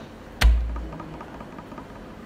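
A single heavy thump about half a second in, with a short low boom after it.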